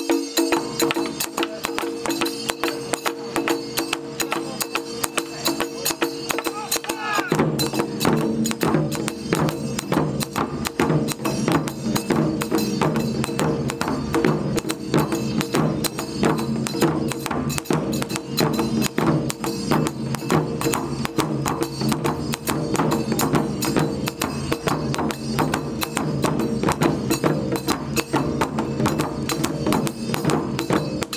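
Japanese wadaiko drum ensemble performing: a fast, dense run of drum strikes and clicking rim hits. Heavier, deeper drum beats join about seven seconds in.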